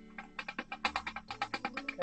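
A fast, irregular run of sharp clicks or taps, several a second, over quiet background music.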